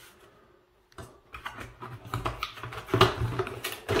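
Packaging being handled: a hard plastic battery charger lifted out of a cardboard box, giving irregular small clicks, knocks and rustles that start about a second in and grow busier toward the end.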